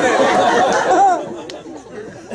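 Several voices talking over one another at once, dying away after about a second, with a faint click near the end.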